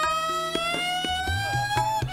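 Violin holding one long bowed note that glides slowly and evenly upward, a drawn-out meend in Hindustani classical style. Soft tabla strokes sound beneath it.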